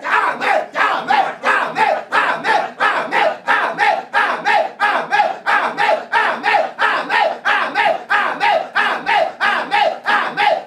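A man's voice loudly chanting short repeated syllables in prayer, very evenly, about three a second, each one falling in pitch.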